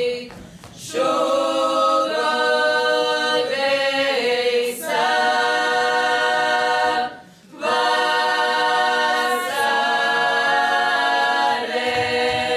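A Latgalian folk song sung a cappella by a small group of mostly women's voices in several parts, in long, held phrases. The singing breaks off for two short breaths, about half a second in and about seven seconds in.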